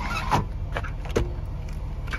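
2014 Range Rover's retractable cargo privacy cover being pulled and let back, giving a few sharp plastic clicks and knocks in the first second and a half, over a steady low hum.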